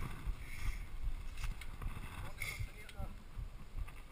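Uneven low rumble with scattered soft knocks: handling noise picked up by a GoPro in its housing while the bikes stand or are pushed on the trail.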